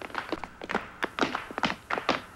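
Dancers' shoes tapping and stamping on a stage floor in a quick, uneven run of sharp strikes, about six or seven a second, during a break in the brass.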